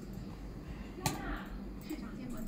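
A single sharp knock about a second in, over a low steady hum and faint background voices.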